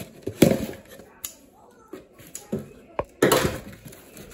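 Scissors cutting through packing tape along the seam of a cardboard box, a few sharp snips and scrapes, then the cardboard flaps pulled open with a loud rustle about three seconds in.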